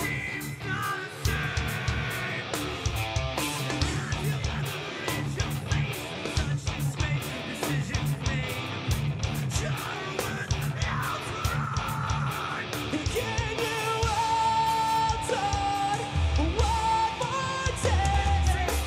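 Metalcore band playing live on a festival PA: distorted electric guitars and busy drumming, with the vocalist screaming and singing over them. Held melodic lines come in during the last few seconds.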